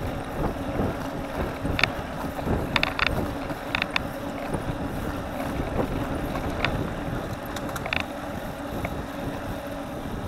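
Wind rushing over the microphone, with road noise from a moving road bicycle. Scattered sharp clicks or rattles, several in quick pairs, sound as the bike rides over the road surface.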